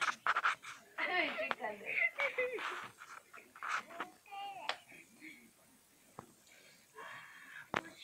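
Breathy, panting laughter and short wordless vocal sounds from people playing close to the microphone, busy for the first five seconds and then fading. There are two sharp clicks near the end.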